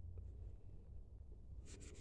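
Near quiet: a steady low background hum, with one faint tick a fraction of a second in.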